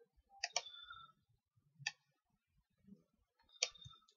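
Faint computer mouse clicks: a quick double click about half a second in, then single clicks near two seconds and near the end.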